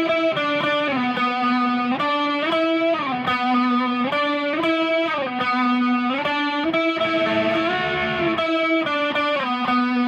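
Electric guitar with chorus effect, tuned down a full step, playing a slow single-note solo. Held notes slide up and down between a few pitches, some with vibrato, with a change of note about every second.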